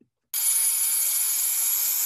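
Compressed air hissing from an air-compressor hose nozzle pushed under an alligator's hide, inflating it to part the skin from the meat. A steady high hiss with a thin whistle above it starts about a third of a second in.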